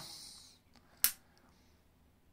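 A single sharp click about a second in, with low room tone around it.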